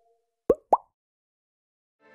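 Two short synthesized 'bloop' sound effects about a quarter second apart, each rising quickly in pitch, from an animated logo sting.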